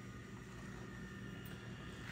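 Faint steady low hum of room tone, with no distinct event.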